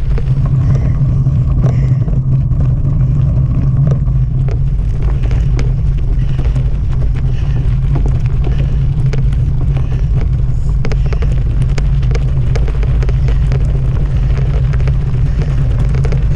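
Steady low wind rumble buffeting the microphone of a bicycle-mounted camera as it rolls over gravel and grass, with tyre noise and frequent small rattles and clicks from the bike over bumps.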